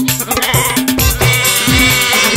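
Instrumental music: tabla strokes, the bass drum's low tones sliding in pitch, with a held, wavering reed-instrument note coming in about half a second in.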